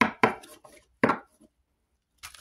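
A deck of tarot cards being shuffled by hand: three sharp card snaps in the first second, then quiet.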